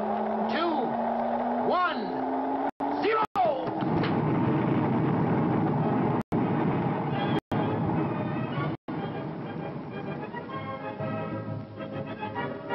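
Rocket blast-off sound effect: a slowly rising hum under the last of the countdown, then a dense, steady roar of the launch from about three and a half seconds in, with music coming in near the end. The old soundtrack cuts out for an instant several times.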